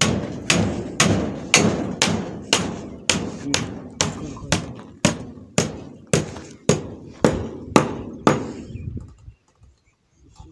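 Steady hammer blows, about two a second, each with a short ring, stopping about eight seconds in.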